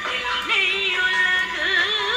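A film song playing: a woman singing a long, wavering melody line over accompaniment, with a new phrase starting about half a second in.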